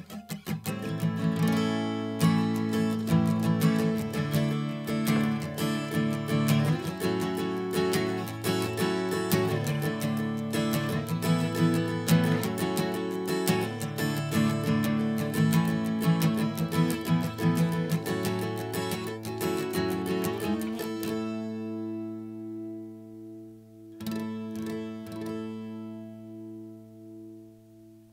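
An acoustic guitar with a capo clamped on the neck, strummed through open chords: a steady strumming pattern for about twenty seconds, then a chord left to ring, and one last strum near the end that rings out. The chords sound in tune with the capo on, the sign that it is holding even pressure across the strings.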